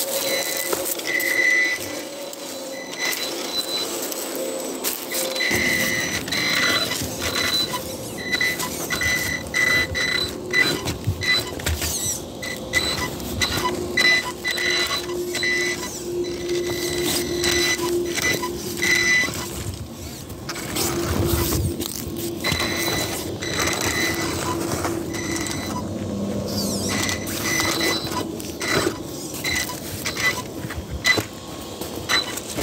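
Axial Ryft RBX10 RC rock bouncer's electric motor and geared drivetrain whining in short on-off throttle bursts, with its tyres and chassis scraping and knocking against rock as it crawls and bounces up a boulder.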